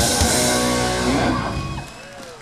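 Live rock band with electric guitar, bass and drum kit striking a final accent with a cymbal crash and letting the chord ring out. The sound fades and dies away near the end, closing the song.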